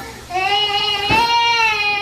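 A toddler's long, high-pitched vocal squeal, held on one slightly rising note with a brief catch about a second in.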